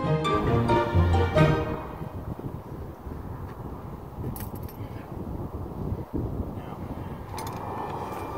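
Background music fading out over the first two seconds, giving way to steady roadside noise of wind and highway traffic, with a couple of faint clicks in the middle and near the end.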